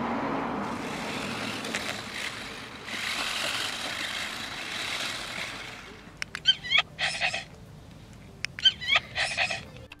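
A steady rushing noise, then two short runs of wavering electronic chirps and yelps from a WowWee CHiP robot dog's speaker, about two-thirds of the way through and again near the end, with a few clicks around them.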